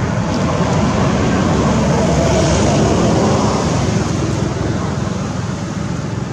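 Road traffic noise: a steady rushing that swells through the middle as a vehicle passes, then eases off.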